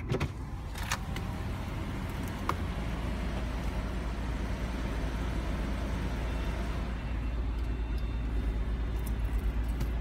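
Car engine idling with a steady low hum, with a few sharp clicks in the first three seconds.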